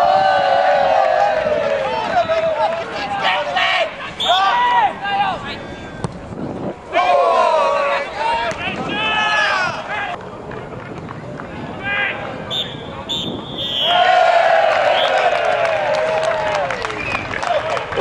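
Players and spectators shouting across a floodlit football pitch, with long drawn-out calls near the start and again about three-quarters of the way through.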